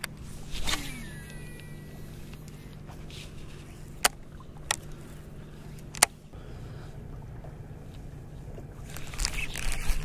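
Steady low hum of the bass boat's motor running, with three sharp clicks about four, four and a half and six seconds in, and rustling handling noise near the end.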